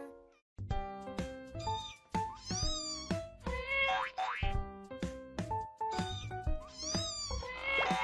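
Background music with plucked notes, over which a kitten gives several high mews, around three seconds in and again near the end.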